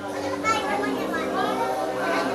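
Voices talking, children's voices among them, over a steady low tone.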